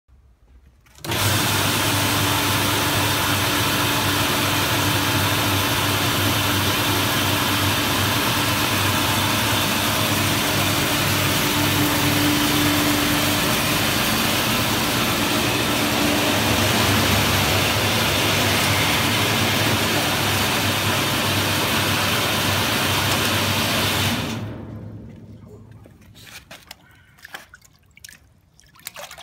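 Automatic fish scaling and gutting machine running with a fish inside: a steady motor hum under a loud, even, rushing watery noise. It starts suddenly about a second in and dies away over a second or so near the end, leaving a few faint drips and clicks.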